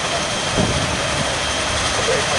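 ATR 72 turboprop engine running on the ground: a steady rushing turbine noise with a constant high whine.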